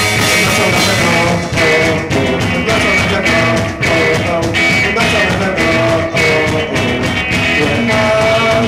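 Live rock band playing, with electric guitar over a steady beat of about two hits a second.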